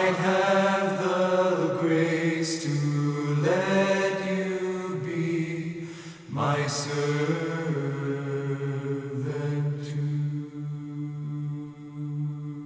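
A vocal group singing slowly in sustained chords, in three long-held phrases, the last one held through the second half and softening toward the end.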